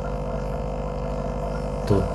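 A steady electrical hum with a buzz of overtones, even in level throughout; a man's voice comes in right at the end.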